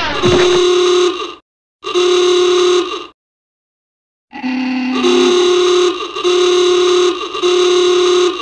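A series of horn-like sound-effect blasts, each about a second long, cut off abruptly with dead silence between them. The first opens with a falling glide, and one after a longer gap starts on a lower note before stepping up.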